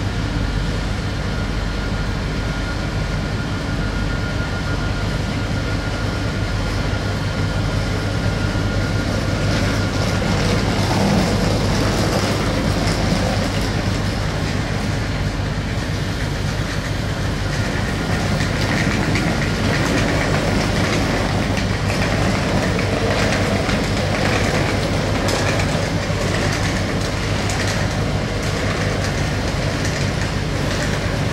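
Bombardier AGC regional multiple unit pulling away and moving off, its engines running with a steady low hum. From a little after halfway the clatter of its wheels over rail joints and points grows.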